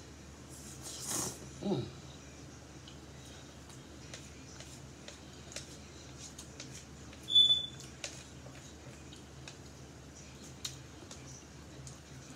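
A person eating ramen noodles with chopsticks: a quick slurp of noodles about a second in, then a hummed "mm", and a sharper, louder slurp midway, with soft mouth sounds and small clicks between.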